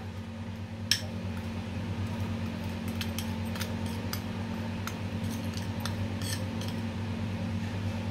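A steel spoon scraping and tapping against a small glass bowl as milk powder is scooped out into a ceramic bowl, then stirring in the bowl. There is a sharp click about a second in, then irregular light clinks and scrapes over a steady low hum.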